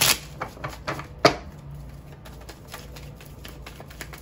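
Tarot cards being handled on a table: a sharp snap about a second in, then a run of light irregular clicks and ticks as the cards are picked up and moved.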